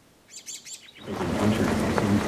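A few quick, high-pitched chirps from a small bird, then, about a second in, a sudden loud hiss sets in with a voice beginning over it.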